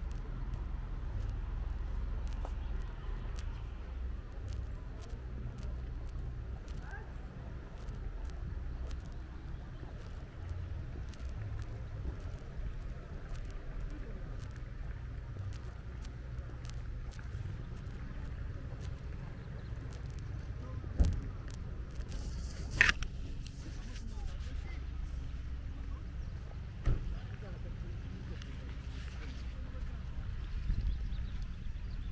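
Footsteps of a person walking on a paved path, faint ticks about twice a second, over a low steady rumble. A few sharper clicks or knocks stand out in the last third.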